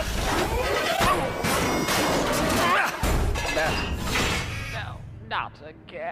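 Cartoon soundtrack: music with a loud crash and clatter sound effect about a second in and another around three seconds, plus brief wordless vocal exclamations, before it quiets near the end.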